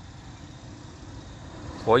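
A steady low rumble with no clear rhythm or changes, and a man's voice starting near the end.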